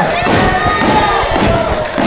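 Crowd noise in a wrestling arena, broken by several dull thuds of wrestlers' bodies hitting the ring and the ringside floor mat.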